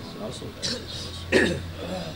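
A man clearing his throat once into a microphone about a second and a half in, over faint voices and a low steady hum from the sound system.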